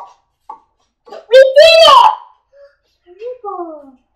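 A young child's voice: a loud, high-pitched exclamation lasting under a second, about a second and a half in, then a shorter, quieter call with falling pitch near the end.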